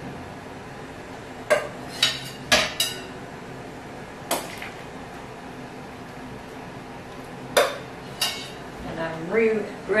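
A metal skimmer clinking against a stainless steel stockpot as blanched tomatoes are lifted out of the hot water: about seven sharp, irregular clinks over a steady low background.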